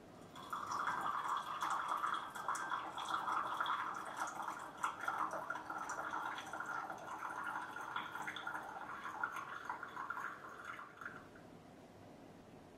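Tea pouring in a thin stream from a small Yixing clay teapot into a glass pitcher, running steadily for about ten seconds, then thinning out and stopping near the end.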